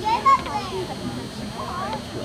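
Indistinct chatter of several young voices in the stands, overlapping, with one voice briefly louder near the start.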